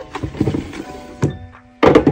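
Clear plastic storage case drawer from DAISO being handled and slid, giving several plastic knocks and clunks, the loudest one near the end. Soft background music plays underneath.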